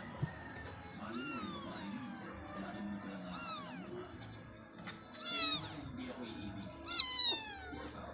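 Kittens mewing: four high-pitched mews falling in pitch, about two seconds apart, the last one the loudest.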